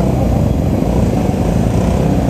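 Yamaha R15 V3's 155 cc single-cylinder engine running steadily in second gear at low speed, the bike slowing from about 24 to 17 km/h.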